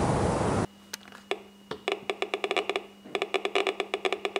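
Radiation detector (Geiger counter) clicking irregularly as it counts radioactive decays. The clicks come in random clusters, sparse at first and then dense, over a faint steady electrical hum. A short burst of hiss cuts off abruptly just before the clicking begins.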